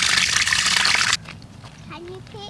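Water gushing out of an IBC tote's bottom outlet valve and splashing onto concrete, a loud steady rush that cuts off abruptly just over a second in. A faint child's voice follows near the end.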